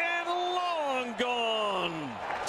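Speech: a TV play-by-play announcer's drawn-out home-run call, the voice held in two long notes that each slide down in pitch.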